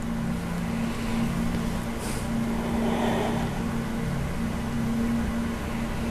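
A steady low hum with a sustained low tone that drops out briefly now and then.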